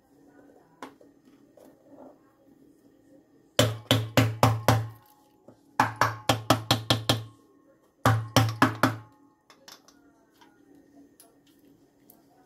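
Three bursts of rapid, sharp knocks, about four or five a second, each burst lasting a second or so.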